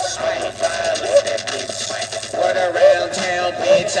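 Hip-hop beat playing: a repeating melody over a steady drum pattern.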